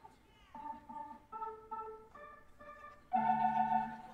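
Organ playing a short improvised phrase: about six brief chords in a row, then a louder held chord about three seconds in.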